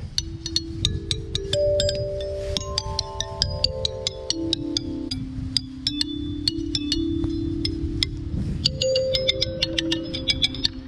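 Outdoor playground metallophone's metal bars tapped by hand and with a metal finger ring: a quick run of sharp clicking taps over ringing notes that hang on and overlap, the pitch stepping from bar to bar. The bars are tuned to one key, so the notes blend.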